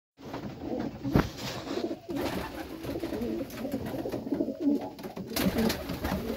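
Racing pigeon cooing over and over in low, wavering phrases, with a sharp tap about a second in.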